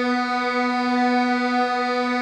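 Electronic playback tone holding one sustained note, about the B below middle C, in the tenor line of a choral score. It is a single steady pitch, held through a tied note.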